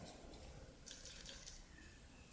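Near silence with a few faint light clicks about a second in, from metal knitting needles being worked.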